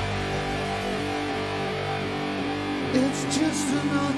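Live rock band music: a held, ringing chord with no drums. About three seconds in, a sung note with vibrato comes in over it.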